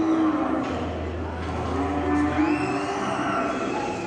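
Cattle mooing: two drawn-out calls, one at the start and one about two seconds in, over general arena noise.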